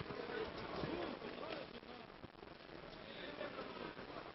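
Boxing arena crowd noise: a steady hubbub with voices calling out in the first couple of seconds, and a few faint knocks.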